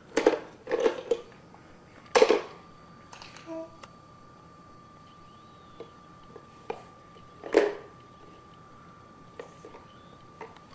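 Hard plastic toys knocking against a plastic shape-sorter bucket as a baby handles them: a few short, sharp knocks, the loudest about two seconds in and another past seven seconds. A faint steady high tone runs underneath.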